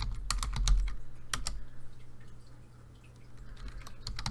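Computer keyboard being typed on: a handful of sharp key clicks in the first second and a half, then only a few faint taps, over a low steady hum.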